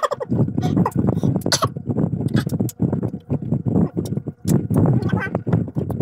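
Close-up crunching and chewing of unripe carabao mango slices, an irregular run of crisp bites and chews, with brief voice sounds near the start and about five seconds in.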